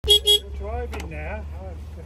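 Two short toots of a small narrow-gauge locomotive's horn, one right after the other, followed by voices.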